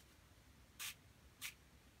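Two short squirts from a hand-held spray bottle, each a quick hiss, about a second in and again half a second later. The mist softens the wet ink.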